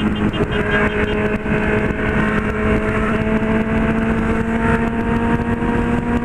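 Honda CB600F Hornet's inline-four engine pulling steadily at highway speed, its pitch rising slowly as the bike gathers speed, under heavy wind noise on the microphone.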